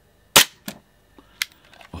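Tokyo Marui Detonics .45 gas blowback airsoft pistol firing a single shot about a third of a second in, a sharp crack followed by two fainter clicks. It is a test shot for muzzle velocity, with a modest reading of about 0.37.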